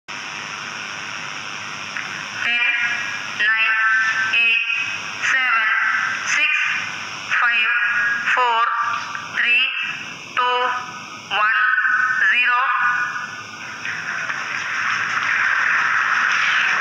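A voice counting down over a loudspeaker, one short word about every second, for the launch of India's LVM3 M4 rocket. Near the end a swelling rush of noise builds as the rocket lifts off.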